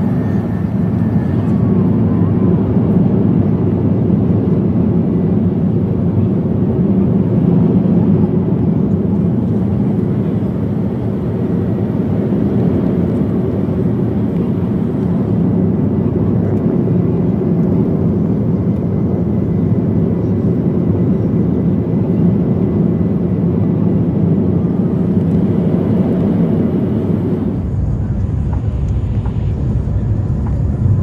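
Steady cabin roar of an Airbus A350-900 on approach, heard from a window seat over its Rolls-Royce Trent XWB engine: engine and airflow noise. Near the end it turns to a deeper rumble.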